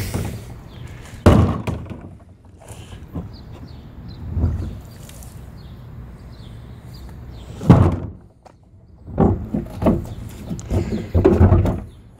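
Large plastic wheeled garbage cart being tipped to pour out cleaning solution and set back down: liquid pouring out at the start, then hollow thunks of the cart's plastic body, the loudest about a second in and near eight seconds, and a cluster of knocks near the end.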